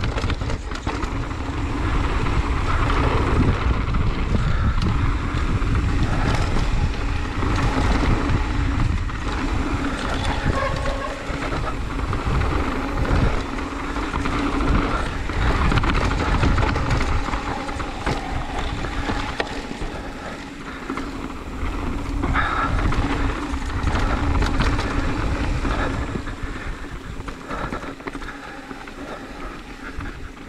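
Mountain bike descending a dirt singletrack: tyres rolling over dirt and rocks with the bike rattling, and wind rumbling on the microphone. The noise eases a little near the end.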